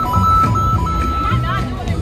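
Interactive question-mark block's electronic sound effect: a thin beeping tone stepping back and forth between two pitches as the blocks are punched, over park background music.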